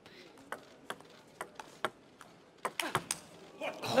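A table tennis rally: a series of sharp clicks as the celluloid ball is struck by the players' rubber-faced bats and bounces on the table, about a dozen hits and bounces over a few seconds.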